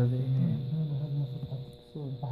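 A man's voice making a drawn-out, wordless vocal sound that fades out about a second in, over a faint steady high-pitched whine.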